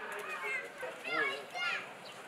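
Voices talking, with two high-pitched calls that rise and fall about a second and a second and a half in.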